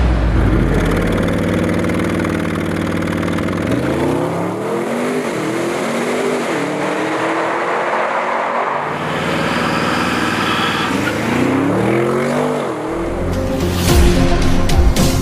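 Audi RS7 Sportback's twin-turbo V8 running under load, its pitch holding steady and then climbing and falling back several times as the car accelerates.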